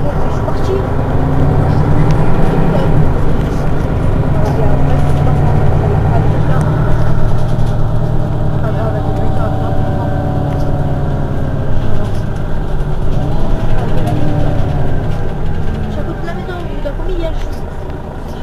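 Mercedes-Benz Citaro city bus's rear-mounted engine idling at a stop, a steady low drone that eases slightly near the end.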